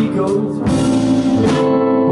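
Live band playing a slow blues-soul groove on electric guitar, electric bass, drum kit and keyboard, with two drum hits, one early and one near the end.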